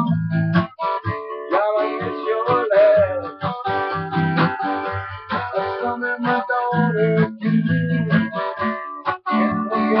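Acoustic guitar strummed in a steady rhythm, chords ringing with short breaks between them.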